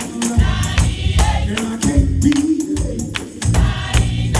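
Gospel choir singing with a band playing a steady beat with deep bass, a tambourine shaken along.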